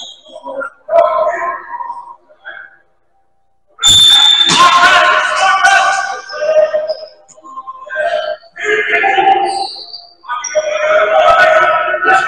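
Loud voices calling out in a gymnasium, in three stretches, starting suddenly about four seconds in after a near-silent moment.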